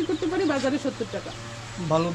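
Desi chicken in a farm cage making a low, quickly wavering croon in the first half, then a lower voice starts near the end.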